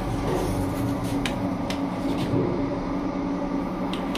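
Steady hum inside a Kone EcoDisc elevator cab while the doors stand open, broken by a few sharp clicks spaced irregularly, likely from the door-close button being pressed before it takes effect.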